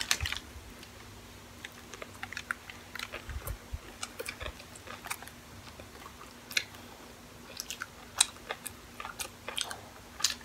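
Close-miked chewing of fast-food burgers by two people, with irregular small mouth clicks and bites.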